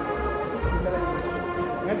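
A procession band's brass holding sustained chords of a Semana Santa march, with a few low drum beats underneath.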